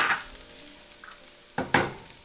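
Chopped red pepper and onion sizzling faintly in hot oil in a frying pan while being stirred with a silicone spatula. A sharp knock at the start and two knocks near the end, from the spatula or bowl striking the pan.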